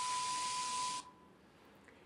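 TV static sound effect: a loud even hiss of white noise with a steady high beep under it, cutting off suddenly about a second in, leaving only faint room tone.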